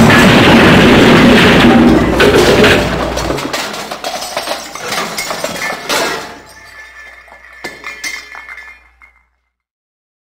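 Glass shattering: one very loud crash that dies away over a few seconds into scattered clinking and tinkling of falling shards, fading out about nine seconds in.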